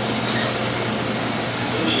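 Steady drone of commercial kitchen equipment: an even hiss with a low hum underneath and a faint high whine, unbroken by any distinct event.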